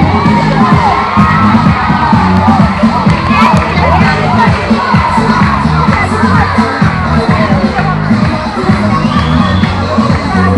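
A crowd of children shouting and cheering, many voices at once, loud and unbroken.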